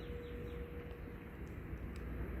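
Faint, even background noise with a thin steady hum.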